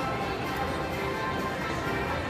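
Bier Haus slot machine's bonus-round music playing steadily while the reels spin for a free spin.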